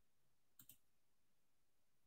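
Near silence with a pair of faint, sharp clicks about half a second in.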